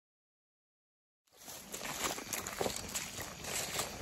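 Dead silence for just over a second, then rustling and crunching of leaves and brush with footsteps as someone moves through thick vegetation, with crackles from twigs and handling.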